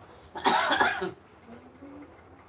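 A man coughing: one short, harsh cough about half a second in, lasting around half a second.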